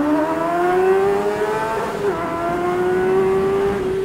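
Honda Hornet 600's inline-four engine revving up hard under acceleration, with one upshift about two seconds in that drops the pitch before it climbs again.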